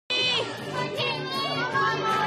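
High-pitched children's voices shouting and cheering, over steady background music.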